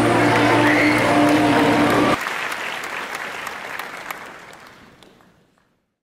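A woman singing into a microphone over a steady low drone, with audience applause underneath. The singing cuts off abruptly about two seconds in, leaving the applause, which fades out to silence.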